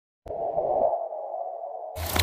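Electronic intro sound effect for a glitching logo: a sharp click, then a steady midrange buzzing hum, with a low rumble under it that drops out about a second in.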